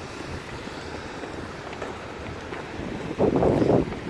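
Wind buffeting a handheld microphone outdoors, a steady low rumble with a louder rush of noise near the end.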